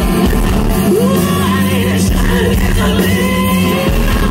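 Live rock band playing: a male lead vocal sings held and gliding notes over electric guitar and bass.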